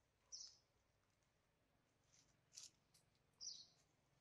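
Near silence broken by two short, high chirps, one just after the start and one near the end, with a faint tick between them: a bird chirping.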